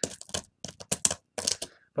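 Stone pestle pounding and grinding hard, woody cinnamon sticks in a volcanic-rock molcajete: quick, irregular sharp clicks and cracks of stone on stone and splintering bark.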